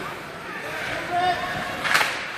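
Ice rink ambience during play: a steady background haze with faint distant voices, and a single sharp knock just before the end.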